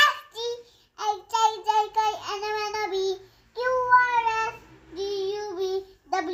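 A young girl singing: three phrases of held notes, separated by short pauses.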